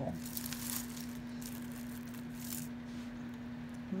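Costume jewelry, glass beads and metal chains, rattling and clinking softly as hands rummage through a heap of it, in two brief spells. A steady low hum runs underneath.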